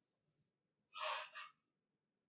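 Near silence broken about a second in by one short audible breath from a person, lasting about half a second.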